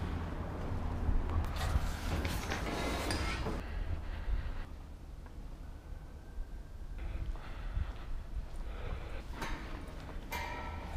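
Scuffing, rustling and light knocks from climbing over a metal mesh railing and moving on foot. A low rumble of handling or wind sits on the camera microphone, and the noise is busiest in the first few seconds.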